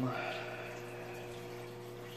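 Steady low hum and faint hiss of room background noise, easing off slightly, with a breath just after the start.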